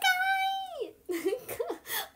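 A small dog whining: one long, high, steady whine lasting about a second that drops away at the end, followed by shorter sounds. The dog is being dressed in a knitted bonnet and is fussing at it.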